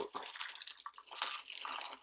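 Small plastic LEGO parts sliding and trickling out of a tipped plastic Pick-A-Brick cup onto a tray, a light, scattered clatter of many small clicks.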